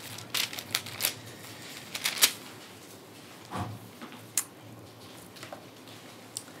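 Thin Bible pages being leafed through by hand: a scattered series of short paper flicks and rustles.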